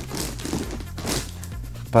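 Hand rubbing and pressing on a cardboard shipping box and its plastic packing tape, giving two short crinkling rustles, about a quarter second and about a second in.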